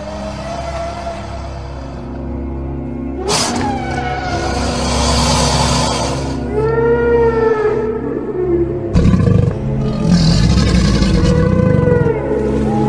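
Sustained background music with dinosaur call sound effects over it. A sudden noisy burst comes about three seconds in, a wavering, moaning call about halfway through, and a loud rough roar over the last few seconds.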